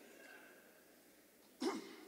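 A quiet pause with faint voices, then about one and a half seconds in a single short, sharp vocal exclamation picked up by the microphone.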